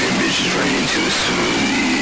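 Breakdown in a heavy electronic track: the bass and drums drop out, leaving a dense, gritty noise texture with wavering pitched tones.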